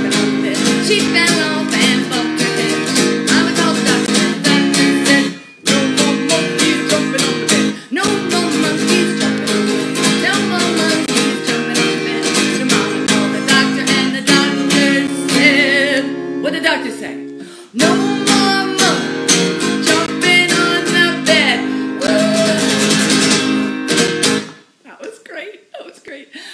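Acoustic guitar strummed in steady chords, with a woman's voice singing along at times. The strumming breaks off briefly a few times and stops about a second and a half before the end.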